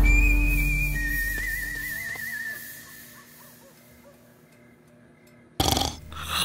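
Horror film score: a low boom dies away under thin, high, whistle-like tones, one of them wavering, and the sound fades to very faint. A sudden loud burst of sound comes near the end.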